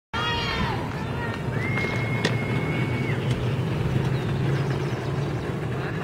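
Two soapbox derby cars coasting by over a steady low rumble, with spectators' voices falling away at the start and a long high shout or whistle held for about a second and a half, about two seconds in.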